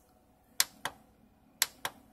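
Four short clicks in two quick pairs about a second apart: the front-panel buttons of a 5048 solar inverter being pressed to scroll through its display pages.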